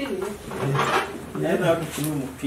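People talking indistinctly in a small room.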